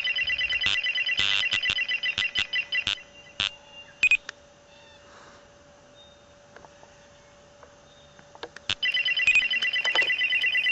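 Rapid electronic beeping of several tones at once, pulsing quickly for about three seconds, then a few scattered beeps, then pulsing fast again near the end. This is the alert tone heard while a speed laser gun is fired at an oncoming car in a laser-detector test.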